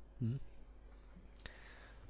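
A man's brief "mm-hmm" as he pauses in his talk, then a quiet gap with a low steady hum and a single faint click about one and a half seconds in.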